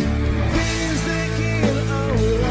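Slow rock ballad music: a guitar-led passage with bending lead notes over steady bass and drums.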